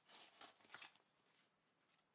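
Faint rustling and crinkling from a fabric cap and its packaging being handled, a short cluster of rustles in the first second, then faint room tone.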